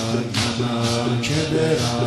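Male maddah chanting a Persian noha (mourning elegy) into a microphone in a long, melismatic line. Sharp slaps about twice a second run under the voice, the rhythm of mourners beating their chests (sineh-zani).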